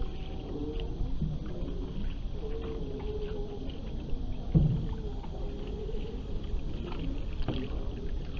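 Water gurgling and lapping against a moving hull close to the microphone while a canoe is paddled on calm sea, over a low steady rumble. A single thump comes a little past halfway.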